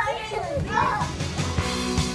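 Children squealing and calling out as they play. Background music starts about halfway through.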